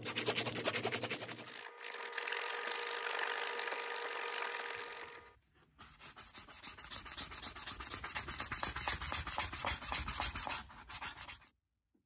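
Sandpaper rubbed by hand over a carved wooden lure body in quick back-and-forth strokes. There is a brief break about five seconds in, and the sanding stops shortly before the end.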